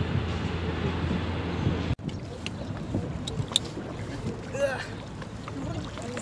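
Wind on the microphone over a steady low hum, cut off abruptly about two seconds in. It gives way to quieter open-air ambience by shallow sea water, with a few light clicks and faint distant voices.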